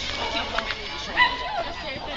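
Voices of people chattering, with a short, loud pitched call about a second in.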